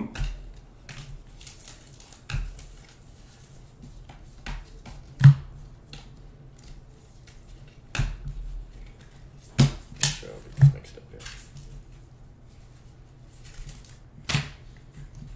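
A stack of 2020 Bowman Draft baseball cards being flipped through by hand, the cards clicking and snapping against each other as each one is slid off the front of the stack, with a handful of sharper snaps at irregular gaps among fainter ticks.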